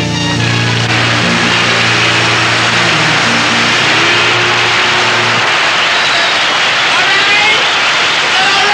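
Live rock band playing a low, held bass line that stops about five seconds in, under loud audience applause and cheering that carries on after the music ends.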